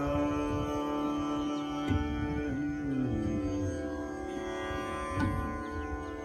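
Male khayal vocal in Raga Bairagi at slow vilambit tempo, holding long notes and gliding slowly between them over a steady tanpura drone. A couple of sparse tabla strokes fall about two seconds in and near the end.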